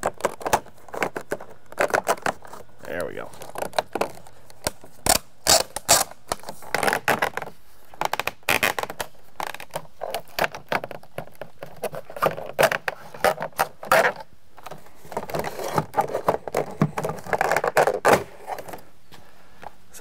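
Vinyl siding being unsnapped with a siding removal tool: many irregular sharp clicks and snaps of the plastic panels, with scraping and rubbing between them.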